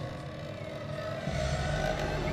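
Ominous soundtrack drone: low, sustained tones that slowly swell louder.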